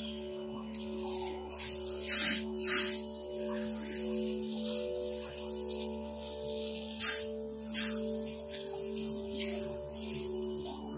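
Garden hose spray nozzle hissing water, with four loud short bursts of spray, two early and two late, over soft background music with steady held tones.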